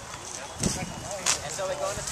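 Indistinct background talk from people nearby, with a sudden thump a little over half a second in and a sharp click about a second later.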